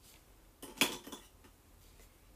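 A brief clink of small hard objects knocking together: a short cluster of sharp clicks a little under a second in.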